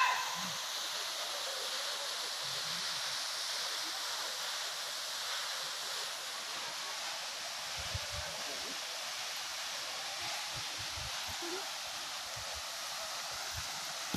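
Steady, even rush of a tall waterfall plunging into a gorge. A few soft low thumps come in the second half.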